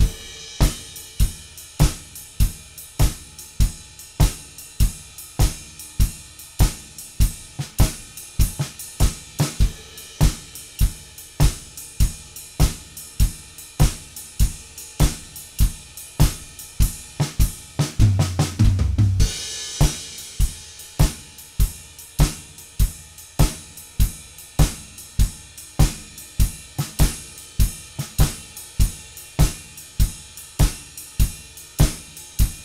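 Acoustic drum kit playing an eight-bar blues groove at 100 beats per minute: a steady kick, snare and cymbal pattern. A short fill a little past halfway leads into a cymbal crash, and the groove then carries on.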